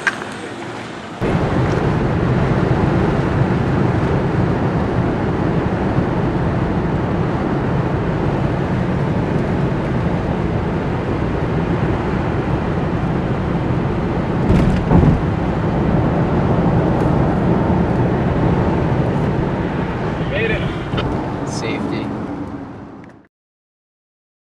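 Steady road and engine noise of a car driving at highway speed, heard from inside the cabin, with a couple of thumps about halfway through; it fades out near the end.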